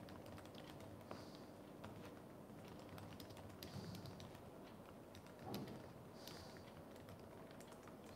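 Faint typing: an irregular run of light, quick key clicks.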